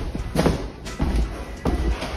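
Background music with about three dull thumps of footsteps on a hardwood floor as someone walks.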